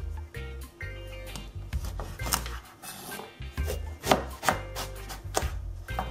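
A kitchen knife cutting through an eggplant and knocking against a wooden cutting board, several sharp knocks in the second half, over background music.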